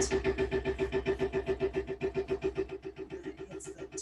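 A loud machine running with a steady, rhythmic pulse about nine times a second over a low hum.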